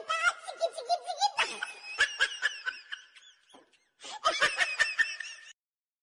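Laughter traded between a bottlenose dolphin and people: squeaky, chattering laugh-like calls with clicks and short whistles, mixed with human laughter, in two spells with a short pause between.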